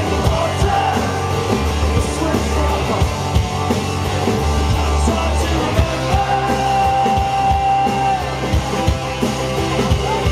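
Live folk-punk band: strummed acoustic guitar, drum kit and keyboard, with a man singing, and one long held note from about six to eight seconds in.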